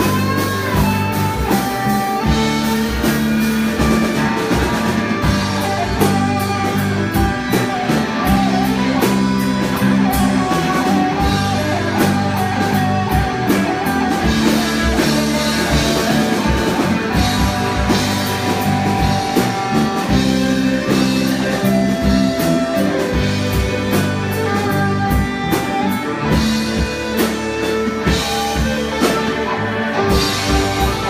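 Live rock band playing: electric guitars over a drum kit, loud and continuous.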